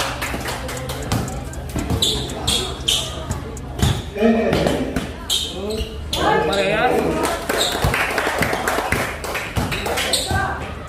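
A basketball dribbled repeatedly on the court floor in irregular bounces, with spectators' voices talking and calling out.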